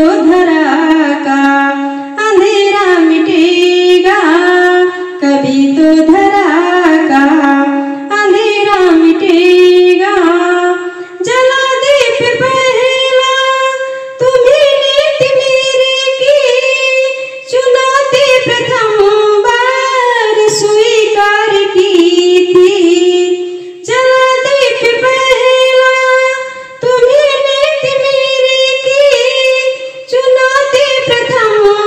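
A woman singing a Hindi poem as a song, in sung phrases a few seconds long with held notes. About eleven seconds in, the melody moves up to a higher register and stays there for most of the rest.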